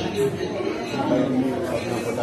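Indistinct chatter of several people talking at once, voices overlapping with no single clear speaker.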